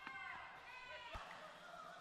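Faint squeaks of basketball shoes on the court as players cut and drive, with a single ball bounce about a second in.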